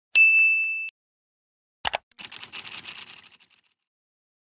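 Notification-bell 'ding' sound effect: one clear, high ringing tone that cuts off after under a second. About two seconds in comes a sharp click, then a fast run of ticks that fades out.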